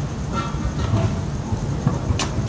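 Pro scooter's wheels rolling over concrete, a steady low rumble, with a sharp clack near the end.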